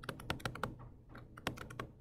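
Faint, irregular clicks and taps of a stylus pen on a tablet screen while handwriting.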